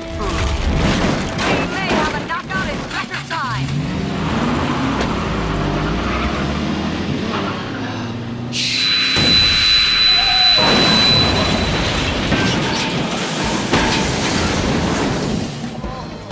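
Animated fight-scene soundtrack: dramatic music with blows, grunts and wooden crates smashing, a quick run of impacts in the first few seconds. About halfway through comes a sudden, shrill, high-pitched blast lasting two to three seconds.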